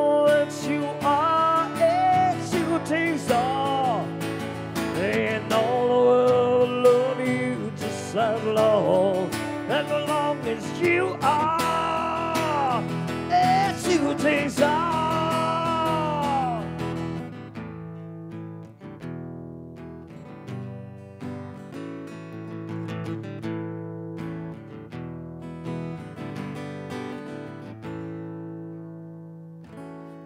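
Acoustic guitar instrumental break. For about the first seventeen seconds lead lines with bent notes ring over the chords, then it drops to quieter, steady strummed chords.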